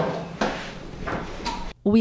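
Heavy wooden upright piano being shifted on and off a moving dolly: a few short scraping, shuffling noises of wood and casters on the floor, with low voices. The sound cuts off suddenly near the end.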